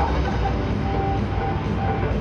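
Steady low rumble of a ship's machinery, with short music notes faintly repeating over it about twice a second.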